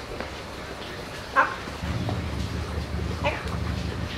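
Two short, sharp dog yips, one about a third of the way in and one near the end, over a low steady motor hum that sets in about halfway.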